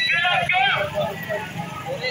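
A raised, shouting voice in two short phrases over a steady low hum, at a street protest march.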